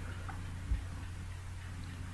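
Quiet room tone with a steady low hum and a faint click or two.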